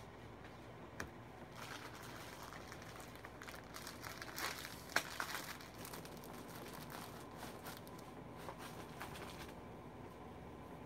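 Faint crinkling and rustling, as of something being handled off to one side, with scattered small clicks; the sharpest click comes about a second in and the loudest crackle around the middle.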